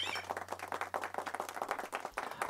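Faint, quick crackling patter, like light applause, over a steady low electrical hum that cuts out near the end.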